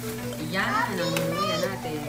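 A young child's voice, high-pitched and rising and falling, over a steady low hum.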